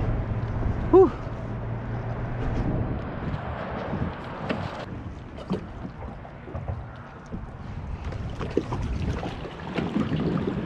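Water lapping against a plastic kayak hull, with wind on the microphone and scattered small knocks and clicks of gear in the boat. A brief voiced sound comes about a second in.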